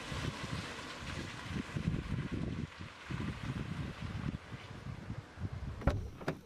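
A car on the move: steady road hiss with wind buffeting the microphone in an uneven low rumble.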